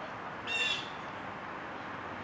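A single short, high bird call about half a second in, sliding slightly downward, over a steady background rumble of outdoor noise.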